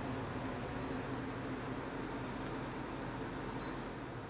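Steady low room hum with two short, high electronic beeps, one about a second in and one near the end.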